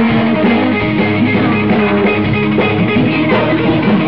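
A rock band playing live: guitars and drum kit, loud and continuous.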